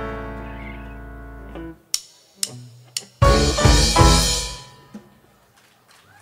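Live rock band ending a song: a held chord on keyboard, bass and guitar fades away, then after a few sharp clicks the band strikes a final chord with a drum and cymbal crash that rings out and dies away.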